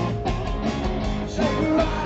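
Live rock band playing through a PA: electric guitar, bass guitar and drums, recorded from the front of the crowd.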